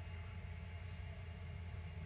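Faint, steady outdoor background: a low rumble with a light hiss and no distinct event.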